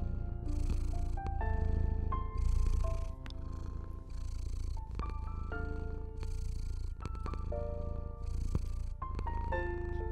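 A cat purring, a low rumble that swells with each breath, mixed under slow, soft piano music of single sustained notes.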